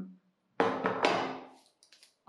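A chef's knife set down on a cutting board: two sharp knocks about half a second apart, each followed by a brief metallic ringing that fades away.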